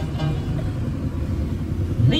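A steady low rumble in a gap between sung phrases of a song, which comes back right at the end.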